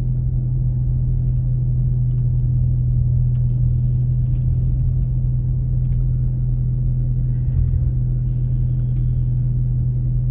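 Car driving, heard from inside the cabin: a steady low drone of engine and road rumble.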